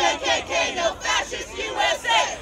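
Several people shouting at close range over one another, with a crowd behind; the voices are strained and high and come in short bursts.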